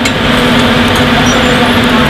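Commercial kitchen extractor hood fan running steadily, an even rushing noise with a low hum under it.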